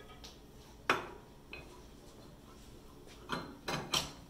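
Steel dado blade clinking as it is handled and fitted onto the table saw arbor: one sharp metallic clank about a second in, then a quick run of three clinks near the end.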